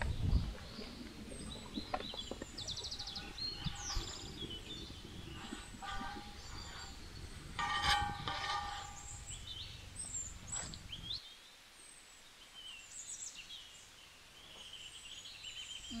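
Small birds chirping and trilling on and off, with one louder, drawn-out call about halfway through, over a low outdoor rumble that drops away about two-thirds of the way in.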